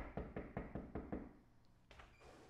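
Rapid knocking on a door: about seven quick knocks in a little over a second, followed by a single sharp click near the end.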